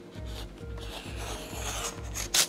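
A hand tool scraping along leather: a scratchy rubbing that builds from about a second in, over background music.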